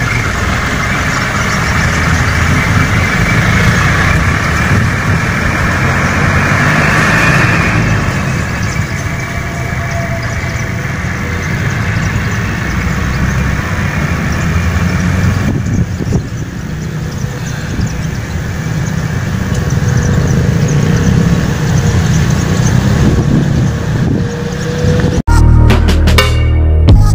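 Light diesel dump truck driving away down the road after tipping its load, its engine running under steady outdoor noise. Music comes in just before the end.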